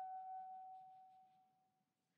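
Soprano saxophone holding one long high note that dies away to nothing about a second and a half in.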